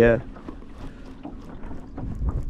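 A man says a brief "yeah", then a quiet steady background of light wind on the microphone, with no distinct event.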